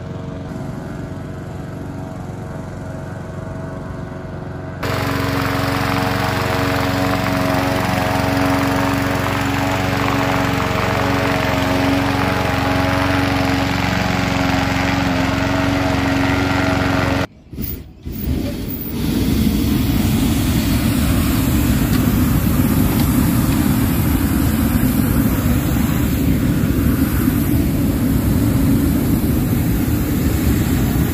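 Small-engine balloon inflator fan running steadily and blowing air into a hot air balloon envelope during cold inflation; it gets louder about five seconds in. After a short break it continues as a louder, steady rush of air.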